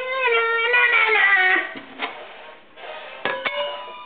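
A high sung melody with music for about the first second and a half, then two sharp clinks, like a utensil striking a bowl, the second leaving a short ringing tone.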